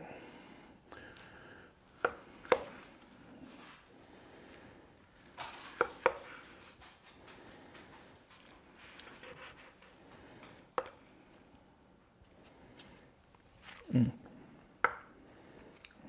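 A knife cutting through smoked beef short ribs and knocking against a wooden cutting board: a few scattered sharp taps over a quiet background.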